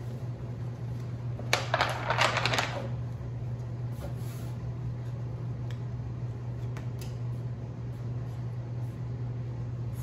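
A deck of tarot cards shuffled by hand: a quick burst of card flutter a second and a half in, then a few single soft card taps. A steady low hum runs underneath.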